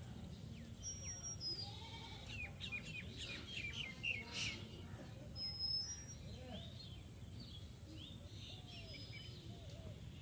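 Small birds chirping in quick, repeated calls over steady low outdoor background noise, the chirping busiest from about two to four seconds in.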